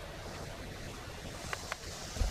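Steady wind noise on the microphone, with two short taps in quick succession about a second and a half in.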